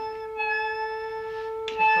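A steady 440 Hz reference tone from a test oscillator, with a Moog synthesizer note sounding over it an octave higher, carrying a stack of overtones, as the synthesizer is tuned to the reference pitch.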